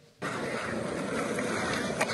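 Skateboard wheels rolling over rough tarmac, a steady rolling rumble that starts suddenly about a quarter second in.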